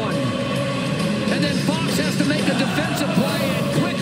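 Arena goal-celebration music over the public address, with many voices from the crowd cheering over it.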